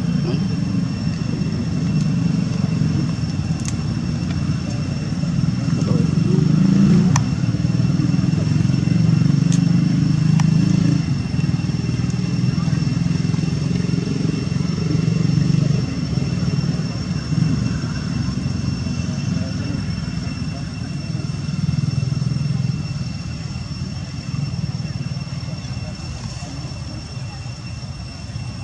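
Indistinct voices over a steady low rumble, with a thin, steady high-pitched whine throughout and a few faint clicks.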